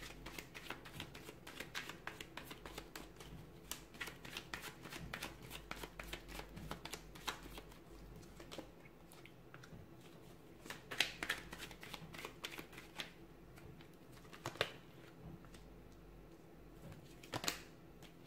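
Tarot cards being shuffled and handled: a quick run of soft flicks for the first several seconds, then sparser, sharper snaps as cards are drawn and laid down.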